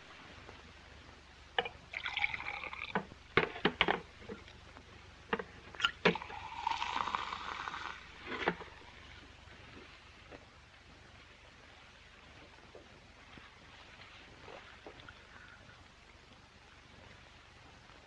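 Drinks being poured from bottles on a tray: glass and bottle clinks, with two spells of liquid pouring into glasses, the second longer.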